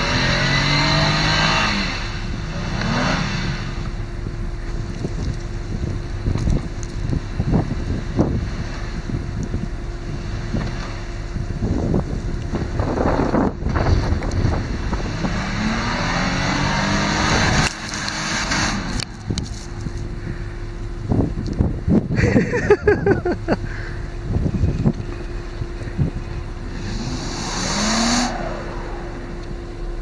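Honda Pilot's V6 engine revving up in repeated surges, around the start, about halfway through and near the end, as the SUV ploughs through deep snow. Its tyres spin and churn the snow between surges.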